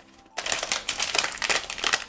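A tea packet crinkling and crackling as it is pulled open by hand, a dense run of crackles starting about half a second in.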